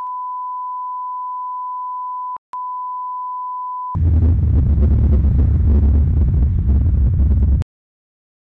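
A steady, pure line-up test tone of the kind laid over tape leaders, with a brief break about two and a half seconds in. At about four seconds it gives way to a louder burst of rumbling static noise with heavy bass, which cuts off suddenly near the end.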